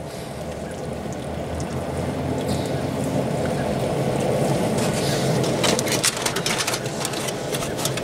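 Aluminium foil crinkling in a dense run of sharp crackles, starting a little past halfway, as it is pressed down around a temperature probe wire on a foil-covered pan. Underneath is a steady rushing noise that slowly grows louder.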